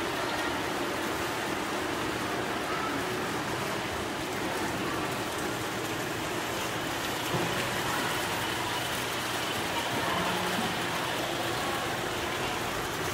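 Steady rush of water from a small waterfall falling into a pond, an even noise that does not change.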